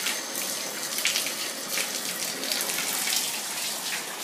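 Water running into a bath, a steady rush with irregular splashes, turned back on to rinse shampoo off a small dog.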